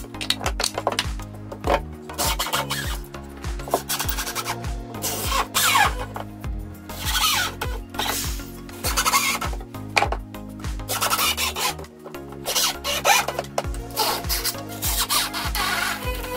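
Background music with a steady beat. Over it come repeated rasping bursts from a cordless drill driving screws into timber framing.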